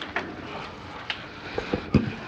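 A few faint clicks and soft low thumps over the steady background hum of the chamber, the loudest thump near the end.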